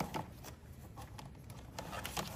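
Faint, scattered small clicks and rustles of fingers handling a plastic wiring connector behind a scooter's plastic body panel, working the connector loose.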